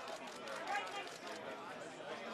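Overlapping, indistinct voices of press photographers chattering and calling out, with no clear words.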